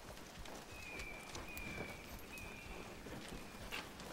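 Faint hoof steps of a horse shifting and stepping, with a thin high note sounding three times in the background.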